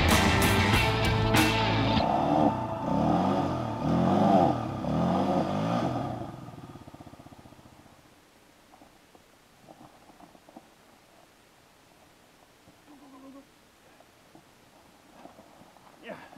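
Background music with a beat, fading out over the first half and gone by about eight seconds in, followed by a very quiet stretch with a few faint sounds.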